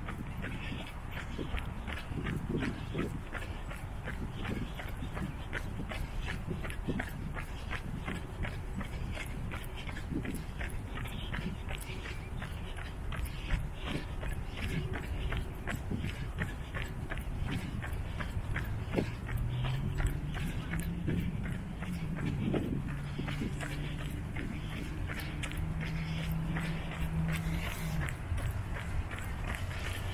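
A runner's quick, even footfalls on a concrete path, with the runner's breathing close to the microphone. A low steady hum joins in about two-thirds of the way through and stops shortly before the end.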